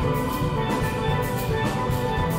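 Steel band playing a calypso arrangement: many steelpans struck with mallets in fast, ringing note runs, over steady percussion keeping a regular beat.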